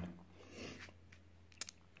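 Quiet room with a faint low hum, a soft rustle about half a second in and one short click about a second and a half in: a pair of dice being picked up off the gaming table.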